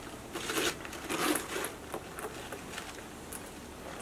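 The zipper of a leather hexagonal crossbody bag's front compartment being pulled open in a few short rasps, followed by lighter handling noise.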